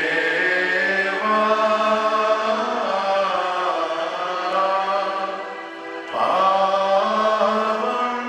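Sung liturgical chant: slow phrases of long held notes, with a new phrase beginning about six seconds in.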